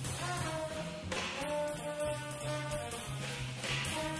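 Live jazz quartet playing: tenor saxophone and trombone hold long notes over a moving double-bass line, with cymbal and drum strokes throughout.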